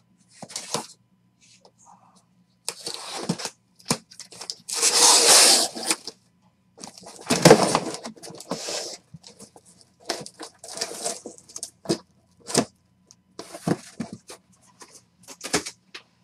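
Cardboard shipping case slit open with a knife, its taped flaps torn and pulled back: a run of rasping tears and scrapes with sharp clicks, the longest about five seconds in and another near the middle.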